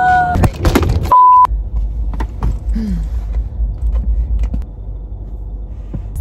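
A short held cry from a woman, then a loud steady one-tone beep about a second in, lasting under half a second, the kind used to bleep out a word. After it, the low steady rumble of a car's interior while driving.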